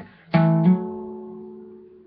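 Acoustic guitar: two strings picked together as a double stop about a third of a second in, a second note sounding just after, then the notes ringing and fading out.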